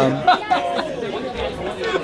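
Background chatter of several people talking at once, with no one voice leading.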